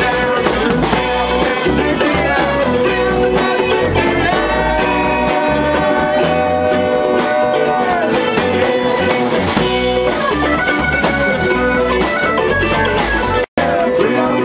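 Live band playing an instrumental passage: electric guitar, bass guitar, keyboard and drum kit, with sustained, bending lead notes. A split-second gap in the sound near the end.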